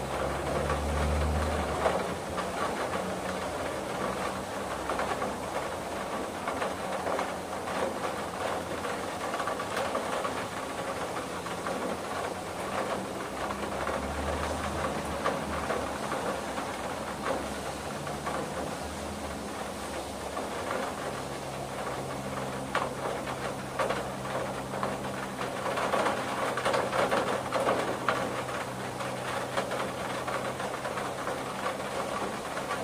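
Rain pattering steadily on a window, a dense run of small drop ticks over a hiss. A low rumble comes and goes underneath, and a low hum sets in about two-thirds of the way through.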